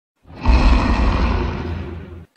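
A logo-reveal sound effect: a loud, deep rushing swell that comes in about a quarter second in, peaks half a second in and slowly dies away.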